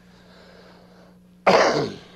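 A man clears his throat once, a short, harsh burst about one and a half seconds in, over a faint steady hum.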